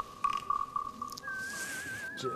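Whistled melody in the background music: one held note, then a higher note with a wavering vibrato about halfway through.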